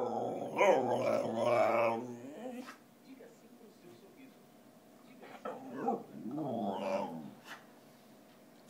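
Whippet 'talking': a loud, wavering, howl-like vocalization with a growly undertone, begging for food, lasting about two and a half seconds. After a quiet stretch, a softer second grumbling vocalization comes about six seconds in.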